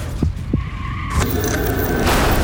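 Film car-chase sound effects: a car skidding with tyres squealing. Two low thuds come in the first half second, and a louder rush of tyre noise with a steady squeal starts about a second in.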